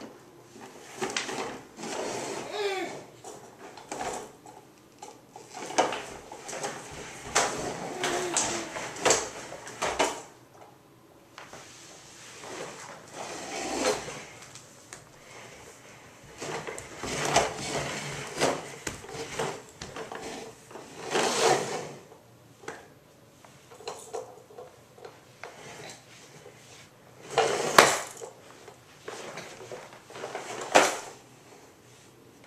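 Plastic ride-on push toy being pushed and knocked about on a hardwood floor, its wheels and body clattering and bumping in irregular bursts. The loudest knocks come about two-thirds of the way in and near the end.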